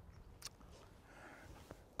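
Near silence, with a faint click about half a second in and a fainter tick near the end.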